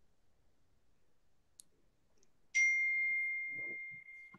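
A single bright ding about two and a half seconds in: one clear high tone that starts suddenly and rings on, fading away over about two seconds. A faint click comes about a second before it.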